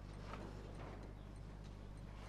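Quiet room tone: a steady low hum with faint, scattered soft ticks.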